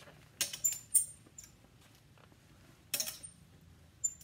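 Metal clothes hangers clinking against a garment rack rail as jackets are hung up and taken down: a quick cluster of sharp metallic clinks in the first second, and another clink about three seconds in.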